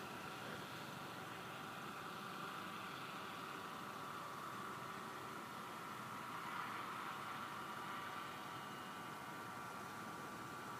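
Distant small crop-spraying helicopter heard as a faint, steady hum with a thin whine, swelling slightly about seven seconds in.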